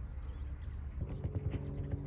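Red fox sniffing rapidly at a bag that holds treats: a fast run of short snuffles starting about a second in.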